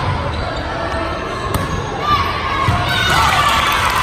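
Volleyball being struck during a rally on an indoor court, with a sharp hit of the ball about a second and a half in, over the steady din of players' calls in the gym.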